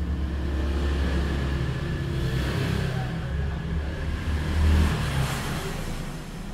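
Low steady rumble with a faint hiss, swelling a little about five seconds in.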